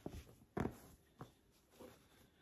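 Thin cotton towel being laid and smoothed by hand over a canvas bag: a few short, soft rustles and taps, the loudest about half a second in.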